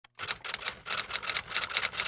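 Fast, irregular keystroke clicks like typing, about six or seven a second. This is a typing sound effect under a caption appearing on screen.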